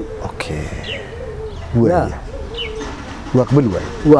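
A dove cooing in long, low, wavering notes, with small birds chirping faintly above it.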